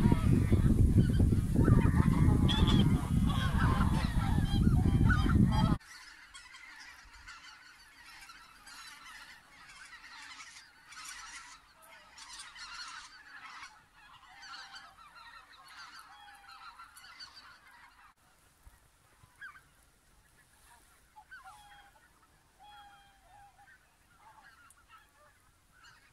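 A large flock of greater white-fronted geese calling, many honking calls overlapping. For the first six seconds the calls are loud over a heavy low rumble. Then the level drops sharply and the calls go on more quietly, thinning to scattered calls in the last several seconds.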